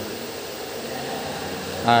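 Steady whir of running fans, even and unbroken. A man's voice starts just at the end.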